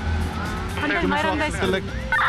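A man speaking over background music, with a steady low rumble of road traffic underneath.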